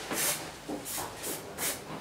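Aerosol spray paint can hissing in several short bursts as paint is misted onto a board.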